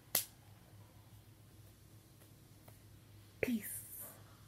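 A single sharp smack just after the start, then quiet, then a short breathy voice sound falling in pitch near the end.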